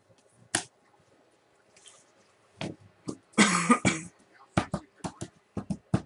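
Handling noise from opening trading-card packs: scattered sharp clicks and snaps, a longer rough burst about three and a half seconds in, then a quick run of clicks near the end.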